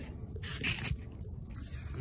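Wet sanding by hand with 600-grit paper on a sanding block across a primed motorcycle rear fender: uneven rubbing strokes.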